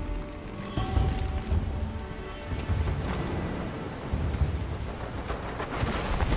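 Heavy rain with low rumbling thunder, under a sparse music score that holds a few notes in the first second or so. Sharp hits come in near the end.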